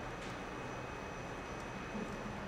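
EF65 electric locomotive standing at the platform with a steady low hum and hiss, and a faint steady high whine.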